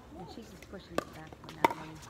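Pickleball paddles striking the plastic ball in a rally: two sharp pops about two-thirds of a second apart, the second the louder.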